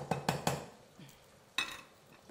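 A metal utensil knocking against a cooking pot: a quick run of four or five sharp knocks in the first half second, then a short rustling noise about a second and a half in.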